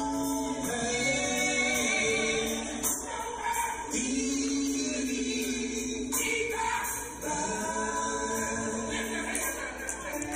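Live gospel singing by a vocal group, voices in harmony with long held notes.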